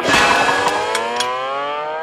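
Cartoon sound effect of a muscle swelling: a sudden hit, then a tone that slowly climbs in pitch, over background music.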